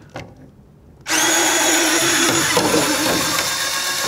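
Kurara Wash handheld electric plate washer switching on suddenly about a second in and running steadily, its motor giving a drill-like hum with a high whine.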